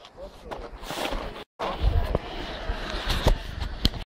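Handling noise from a handheld camera rubbing against a padded ski jacket and being moved about: low bumps and rustling with a few sharp clicks. The sound cuts out completely for a moment about a second and a half in.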